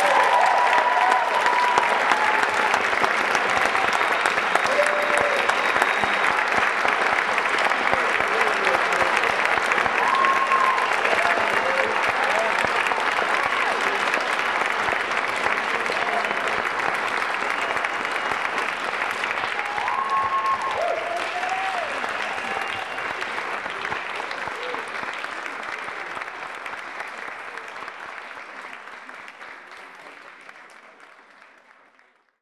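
Audience applauding, with voices calling out now and then. The applause starts right at the close of the music and slowly dies away over the last several seconds.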